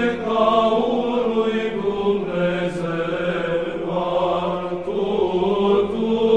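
Orthodox Byzantine-style church chant: a slow, sustained sung melody over a steady held drone note.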